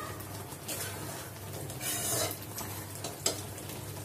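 A long steel ladle stirring thick kootu in an aluminium kadai, with soft scrapes against the pan and a gentle sizzle of the cooking dish; one sharp click about three seconds in, as metal taps metal.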